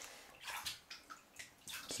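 Bathwater splashing lightly in a bathtub as children move in it: a few short splashes and sloshes.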